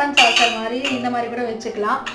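Stainless steel cups and saucers clinking and rattling as they are handled.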